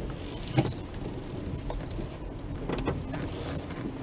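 Car rolling slowly over a rough, broken lane, heard from inside the cabin: a steady low engine and road rumble with a few sharp knocks from the tyres and suspension, the loudest about half a second in.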